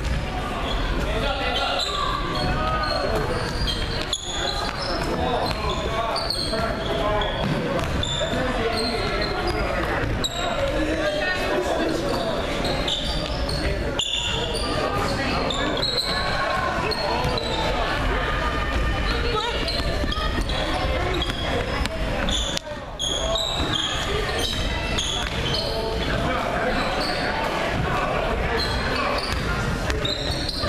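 Sounds of a basketball game in a gym: the ball bouncing on the hardwood court, sneakers squeaking in short high chirps, and players and spectators calling out, all echoing in the large hall.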